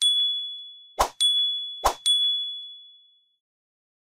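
Three bright sound-effect dings, each led by a short swoosh, about a second apart: the pop-in chime of animated on-screen buttons. The last ding rings out and fades a little after three seconds in.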